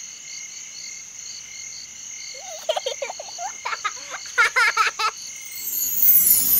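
Night-time ambience: insects chirping in a steady, pulsing drone, with a run of frog croaks from about halfway through.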